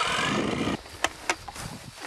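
A steady mechanical hum with a few held tones that cuts off abruptly under a second in, followed by a few light clicks.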